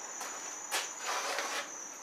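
A steady, high-pitched insect-like trill, with a single sharp click about three-quarters of a second in.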